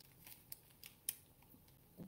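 A few faint, short clicks and crinkles of a small plastic bag of wooden canvas keys being handled, mostly in the first second, then near silence.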